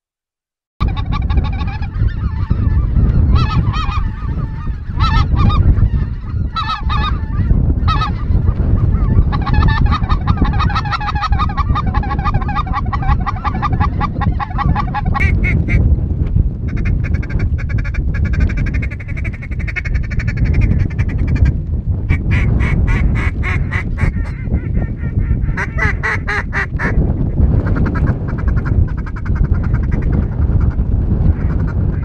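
Waterfowl calling: geese honking and ducks quacking in runs of several seconds, over heavy wind buffeting the microphone. The sound starts abruptly about a second in.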